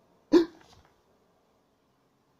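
A man's single short, hiccup-like vocal sound about a third of a second in, followed by faint room tone.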